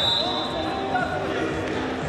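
Shouted voices of coaches and spectators calling out over a wrestling bout in a large sports hall, with dull thuds from the wrestlers on the mat.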